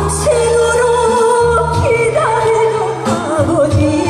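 A woman singing a Korean ballad into a microphone over an instrumental backing track, holding long notes with vibrato.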